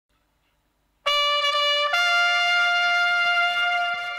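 Solo trumpet entering about a second in with a long held note, then moving up to a higher note just before two seconds in and sustaining it.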